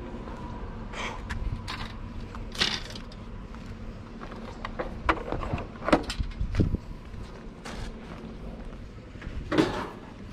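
Irregular knocks and clatters from curbside junk being handled and set down, including a metal plant stand, over a low rumble.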